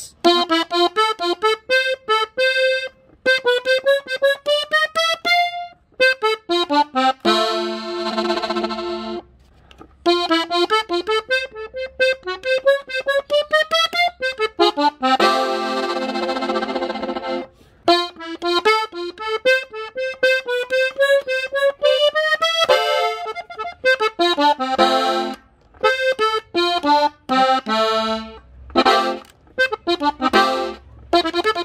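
Gabbanelli button accordion in F playing ornament runs slowly: runs of separate notes climbing in pitch, with a few held chords between them.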